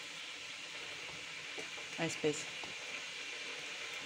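Pot of soup simmering on the hob, a faint steady hiss of bubbling, with a short murmured word about two seconds in.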